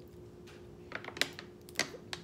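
A man drinking from a plastic water bottle, close to the microphone. From about a second in there are a few sharp clicks and crackles from the bottle's thin plastic and his sipping and swallowing.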